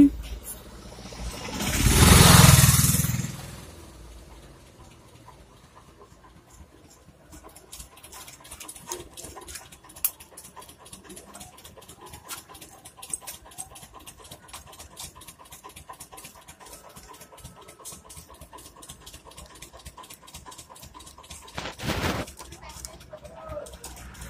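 A screwdriver working at the nuts of a gas stove's auto-ignition unit, giving many small clicks and scrapes of metal on metal. Near the start, a loud rush of noise swells and fades over about two seconds, and a shorter one comes near the end.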